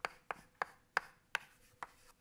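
Chalk tapping and scraping on a blackboard as capital letters are written: six sharp clicks, about one every third to half second.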